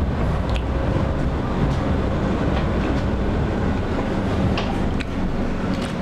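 Interior noise of a Pesa Fokstrot (71-414) low-floor tram: a steady low rumble with a few faint clicks scattered through it.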